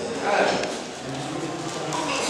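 A man's voice preaching into a microphone, speaking fairly quietly in short phrases.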